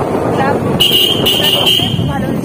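Busy street noise with voices, and a shrill steady tone that starts just under a second in and holds for about a second.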